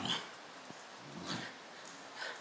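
Two dogs play-fighting, with short growls: one right at the start and another brief, lower one a little over a second in.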